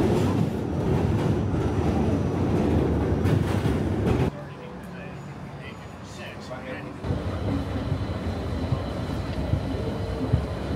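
Loud, steady rumble of a subway train running over a bridge, cut off abruptly about four seconds in. Then comes a quieter stretch of street noise, and from about seven seconds the busier background hum of a crowded store.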